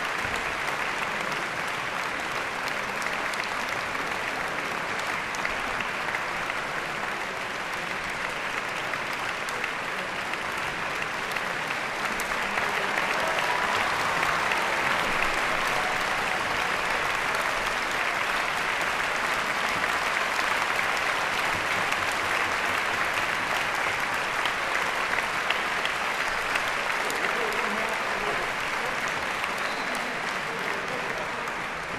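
Concert-hall audience applauding steadily, growing a little louder about halfway through.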